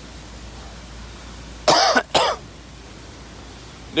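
A person coughs twice in quick succession, a little under two seconds in, over steady faint background noise.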